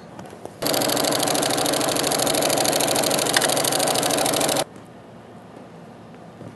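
Electric sewing machine running at a steady speed for about four seconds, stitching a silk tie strip onto a denim panel, with a fast, even needle rhythm. It starts and stops abruptly.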